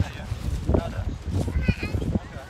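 A child's high-pitched voice giving one short, rising call near the end, over scattered knocks and a steady low rumble.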